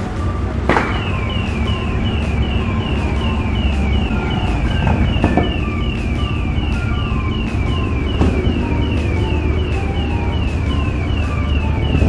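An electronic siren sounding a fast run of short, high falling chirps, about three a second, starting about a second in, over a steady low rumble.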